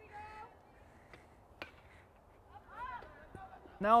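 A single sharp crack of a bat hitting a softball for a foul ball, about a second and a half in, faint over distant voices. It is followed by a short rising-and-falling shout.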